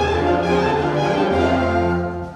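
High school wind band playing live: sustained chords from flutes, saxophones and brass over held low tuba notes.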